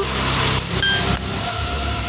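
A loud, steady rumbling noise with a deep low end, with a short high tone near the middle.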